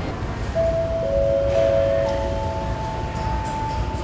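Airport public-address chime announcing a boarding call: three notes, a middle one, then a lower one, then a higher one, each ringing on and overlapping, over the low steady hum of the terminal hall.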